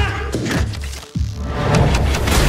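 Action-trailer music with a heavy low bass and thudding impact hits of a fistfight. The music drops out briefly about a second in and comes back with a sudden heavy thud.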